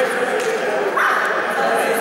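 Several people's voices talking at once in a sports hall, with no clear words.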